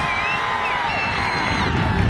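A crowd of high school students cheering and screaming, with several long held high-pitched screams over the crowd noise; the loudest scream trails off about a second in.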